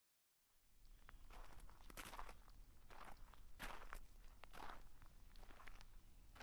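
Near silence: faint room tone with a scattering of soft, irregular rustles and clicks.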